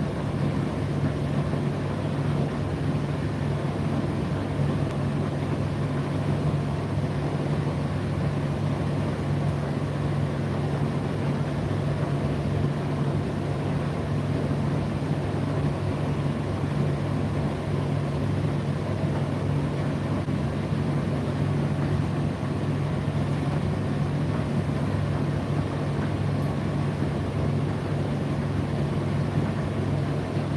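Indesit IDC8T3 8 kg condenser tumble dryer running mid-cycle: a steady low hum that does not change.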